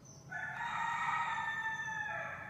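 A rooster crowing once: one long call that sets in just after the start and drops slightly in pitch as it fades.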